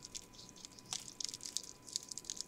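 Paper crinkling and rustling as a folded, fan-pleated paper cupcake liner is handled and pressed down onto a paper tag: a run of small crackles with one sharper click about a second in.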